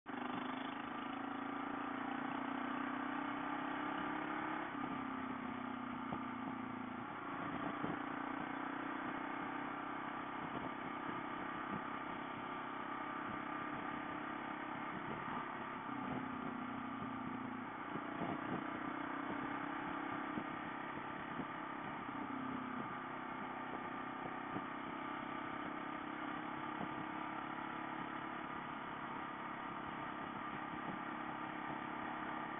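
Motorcycle engine running at low road speed, its note stepping up and down several times with throttle changes, over steady road and wind noise.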